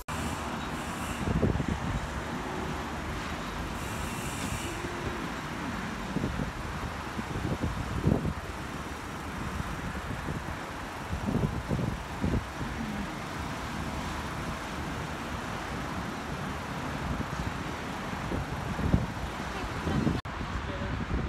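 Steady city road traffic noise: a continuous even hum of passing vehicles.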